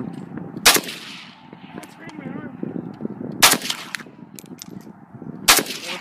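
AK-47 rifle (7.62×39 mm) firing three single shots, about a second in, at about three and a half seconds and near the end, each a sharp crack with a short reverberant tail.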